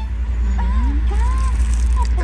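Steady low rumble of a passenger train under way, heard from inside the carriage, with a person's voice sliding up and down in pitch over it about half a second in.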